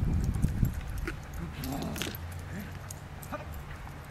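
A dog giving a few short whines over a steady low rumble, with a few light clicks.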